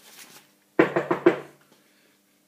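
A man's short vocal outburst: three or four quick pulses of voice about a second in, after a faint breath.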